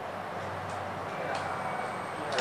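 Steady background noise with a low hum, a couple of faint clicks and a faint thin high tone in the second half.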